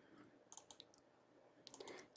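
Near silence, with a few faint, short clicks: a small group about half a second in and another just before the end.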